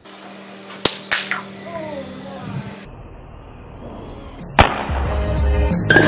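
A hammer strikes the capped top of a water-filled glass bottle: two sharp cracks close together about a second in, and another just before five seconds in. The blow knocks out the bottle's bottom by cavitation. Background music plays underneath and grows louder near the end.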